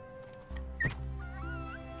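Background music, with a short wavering animal squeal about a second in.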